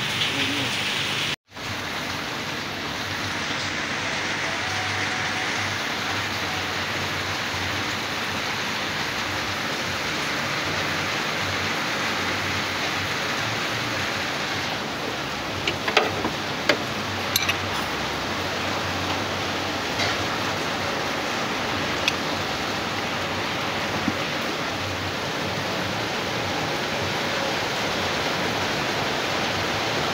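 Steady rain falling, a constant hiss of rain on the surfaces around, with a few light sharp clicks in the middle, typical of metal parts being handled.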